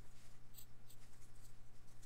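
Faint clicking of computer keyboard keys as code is typed, over a steady low hum.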